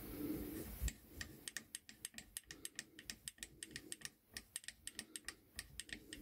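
A knock just under a second in, then a quick run of light, sharp metal clicks, about five a second, as the thumbscrews and fittings of a Stanley No. 55 combination plane are worked by hand.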